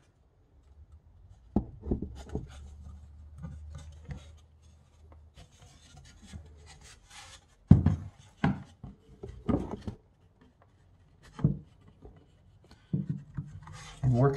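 Hands working a thin bentwood box, feeding a lacing strip through a slot in its overlapping seam: soft rubbing and scraping of wood on wood, broken by scattered sharp knocks and taps, the loudest about eight seconds in and again near the end. A faint low hum runs under the first half.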